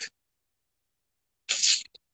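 Dead silence for over a second, then, about one and a half seconds in, a short, sharp breath sound from the man, a noisy puff lasting about a third of a second.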